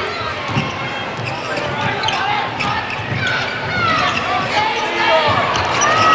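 A basketball being dribbled on a hardwood court, with repeated bounces under steady arena crowd noise.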